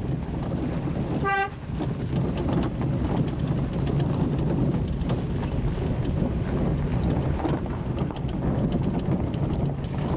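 A car driving, with steady engine and road rumble. One short horn toot comes about a second in.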